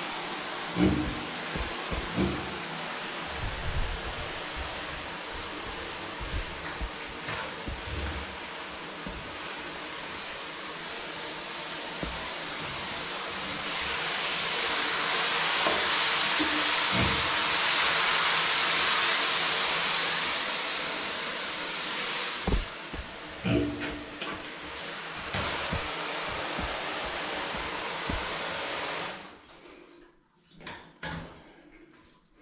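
Handheld shower head spraying water onto a small pig in a tiled bathroom, a steady hiss that grows louder for several seconds midway and stops suddenly shortly before the end. A few low knocks sound in between.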